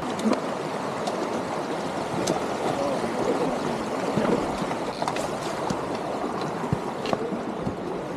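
Shallow mountain stream running over rocks, a steady rush of water.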